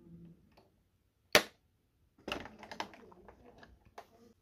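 Small hard clicks and taps from a 1:18 scale diecast Land Rover Defender model being handled: one sharp click a little over a second in, then a quick run of lighter clicks and taps.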